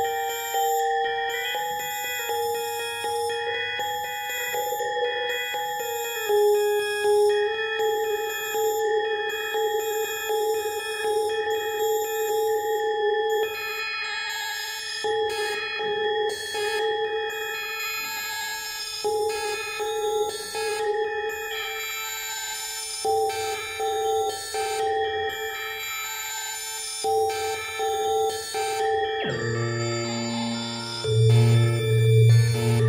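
8-bit synthesizer circuit playing a held, buzzy electronic note that dips in pitch briefly, with a higher tone above it cutting in and out every second or two in the second half.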